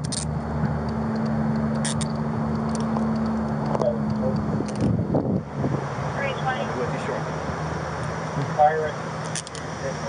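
Steady hum of an idling vehicle engine. Over it come a few sharp metallic clicks as handcuffs are handled in the first seconds, and a faint voice near the end.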